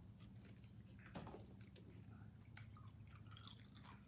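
Near silence with a faint trickle and drip of a drink being poured into a cup.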